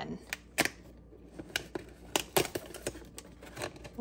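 Fingers picking at and tearing open a perforated cardboard advent calendar door: a run of irregular small clicks, scratches and tearing.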